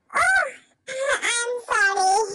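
A high-pitched voice making drawn-out wailing sounds that slide up and down in pitch, with no clear words, in two stretches: a short one at the start and a longer one from about a second in.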